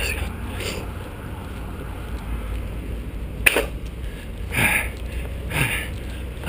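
A man breathing hard after running, with short voiced exhales about once a second starting past the halfway point, close on a chest-mounted microphone over a steady low wind rumble. One sharp click about three and a half seconds in.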